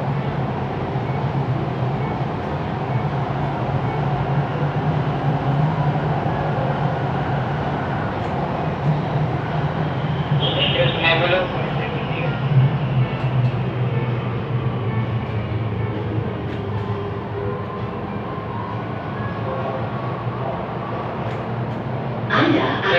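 Siemens Inspiro metro train running through a tunnel, heard inside the driver's cab: a steady rumble of wheels on rail under a low, even hum.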